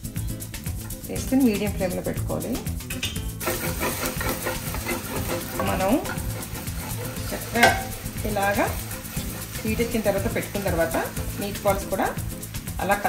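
Turkey meatballs sizzling as they fry in olive oil in a frying pan; the sizzle comes up suddenly a few seconds in and stays, with one sharp clatter a little past halfway. Background music plays throughout.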